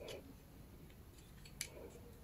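Faint handling of a ring light's plastic phone clamp and cable by hand. There is one sharp click about one and a half seconds in, and soft rubbing near the start and just after the click.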